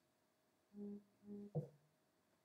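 Two short, steady, low hums from a person's voice, one right after the other about a second in, followed at once by a brief sharp knock.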